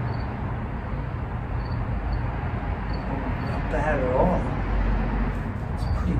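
Steady low outdoor background rumble. About four seconds in, a man gives a brief wavering hum.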